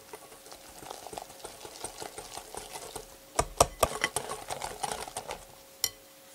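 Wire balloon whisk stirring flour into an egg-yolk and yogurt batter in a glass bowl, the wires clicking quickly against the glass, louder and busier from about halfway on. One sharp click just before the end.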